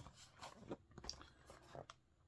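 Near silence with a few faint clicks and crinkles: a plastic blister-card toy package being turned over in the hand.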